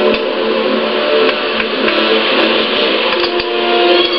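Film soundtrack heard through a TV speaker: several steady sustained tones over a dense hum, with a sharp click just after the start as a cockpit switch is flipped.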